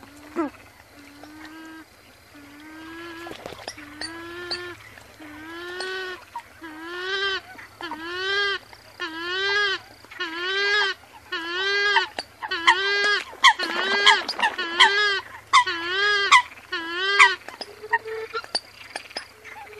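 A bird repeats a nasal honking call in a steady series, each call arching up and falling in pitch. The calls grow louder and come a little faster through the series.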